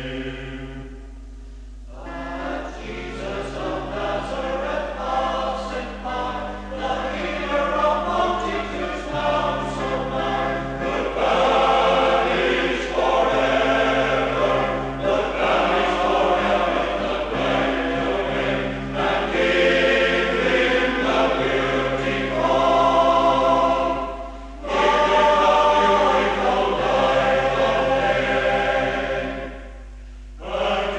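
Male voice choir singing in parts, with short pauses between phrases about a second in and again near the end. A steady low hum runs underneath.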